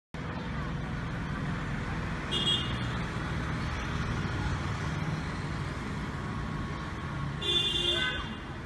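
Steady rumble of road traffic with two short vehicle horn toots, one about two and a half seconds in and another near the end.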